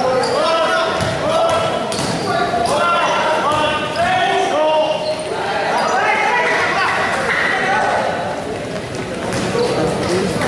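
A basketball bouncing on a gym court during a game, with several voices calling out over one another.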